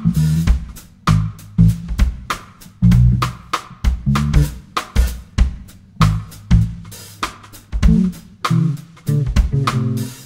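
Funk band in an instrumental passage: a drum kit plays a steady groove of kick, snare and hi-hat over a low bass line, with no vocals.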